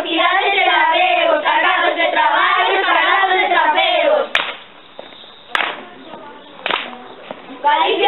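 A group of children singing together, breaking off about four seconds in. A few sharp claps or knocks sound in the short pause, and the singing starts again near the end.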